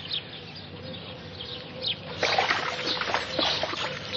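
Water splashing and trickling, as in washing in a tub, beginning about two seconds in after a quieter start.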